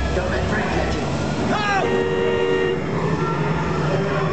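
A quick rising call, then a horn-like honk holding two steady notes for about a second, over a busy background of ride sound and voices.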